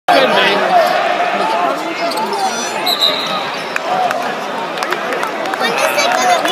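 A basketball bouncing on an arena's hardwood court during play, under the chatter of many spectators' voices in the stands.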